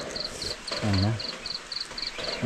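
An insect chirping in a steady rhythm of short, high-pitched pulses, about four a second.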